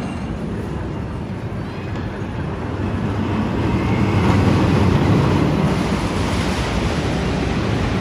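Arrow Dynamics steel roller coaster train rumbling along its track, loudest about halfway through as it passes overhead.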